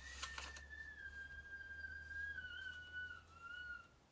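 A faint, thin whistling tone that drifts slowly down in pitch, over a low hum. Both stop shortly before the end.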